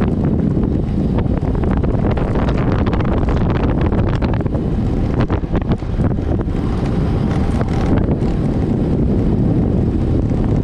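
Wind buffeting the microphone on a fast road-bike descent, with the rattle and many small knocks of the tyres over broken, potholed asphalt.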